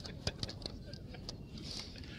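Pause in a handheld tape-recorded interview: tape hiss with faint voices in the background and a few sharp handling clicks.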